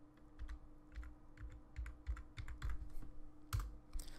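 Computer keyboard typing: a quick, irregular run of faint key clicks as a short word is typed, over a faint steady hum.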